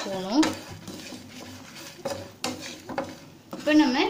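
A spatula stirring and scraping dry-roasting grated coconut, dried red chillies and whole spices around a nonstick pan, with a few sharp clicks of the spatula against the pan about two to three seconds in.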